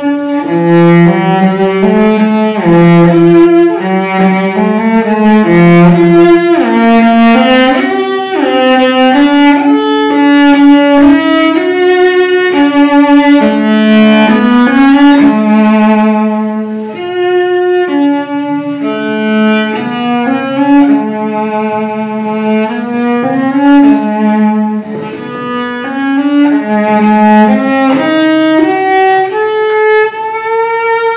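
Unaccompanied cello, bowed, playing a slow melody of sustained notes with vibrato in the instrument's middle register. The line climbs higher near the end.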